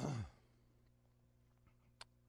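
A man's short voiced sigh right at the start, falling steeply in pitch and lasting about a quarter of a second. After it, quiet room tone with a steady low hum.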